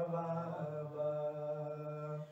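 A man's solo voice chanting a marsiya, a mourning elegy, drawing out the word "baba" in long held notes.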